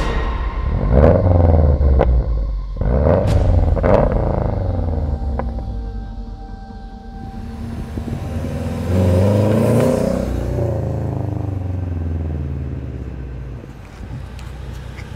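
Subaru WRX's turbocharged flat-four engine blipped several times, its pitch rising and falling with each rev, then revved again more slowly about nine seconds in as the car pulls forward.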